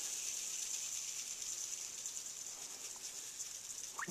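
Salt trickling from a glass shaker into a plastic tub: a steady, high, fine hiss of grains that slowly gets quieter.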